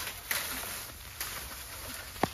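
Freshly cut green bamboo pole dragged over dry bamboo leaf litter, a steady rustling scrape with footsteps, broken by three sharp clicks: one at the start, one a moment later and one just past halfway.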